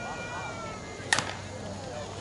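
A slowpitch softball bat strikes the ball once, about a second in: a single sharp, bright crack of contact with a brief ring after it.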